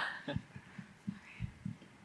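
A few soft, short, low thumps spaced out through a quiet stretch.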